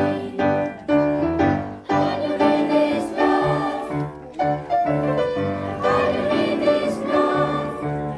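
Children's choir singing with an instrumental accompaniment whose low notes repeat in a steady beat.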